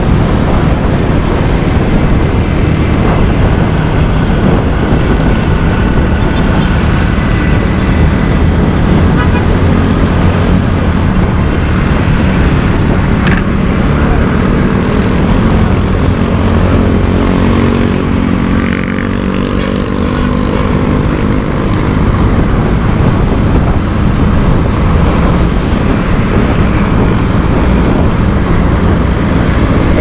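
Honda Click 125i scooter riding in city traffic: steady wind rush on the camera microphone over the hum of the scooter's engine and the surrounding traffic. Around the middle, an engine note rises and falls in pitch.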